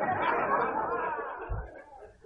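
Audience in a hall laughing and murmuring together, loudest at first and fading away over about a second and a half, with a brief low thump near the end.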